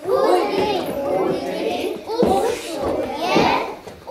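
A group of young children's voices at once, chattering and calling out over one another.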